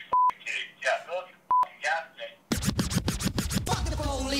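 Two short steady censor bleeps cut out swear words in a man's voice over a phone line. From about two and a half seconds in, a loud, rapidly stuttering TV network logo sting takes over.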